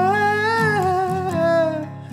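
A man singing one long held note over acoustic guitar, the note dipping slightly in pitch near the end.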